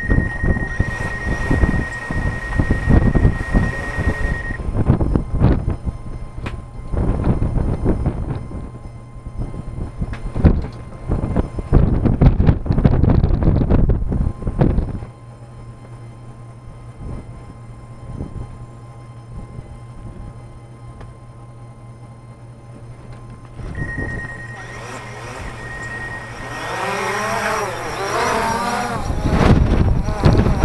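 Gusty wind buffeting the microphone for the first half, with a steady high tone for the first few seconds. From about halfway a steady low hum of a DJI Phantom 4's motors idling follows; near the end their pitch rises and wavers as the quadcopter throttles up to lift off in the gusts.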